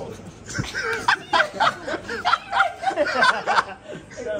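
Men laughing and chuckling in short bursts, with some talk mixed in.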